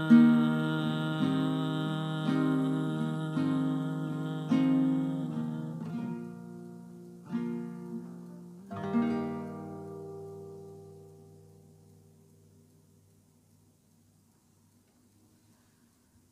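Acoustic guitar playing the closing bars of a song: single picked notes about once a second over a ringing chord, then a few more spaced notes, the last one about nine seconds in, ringing out and fading to near silence.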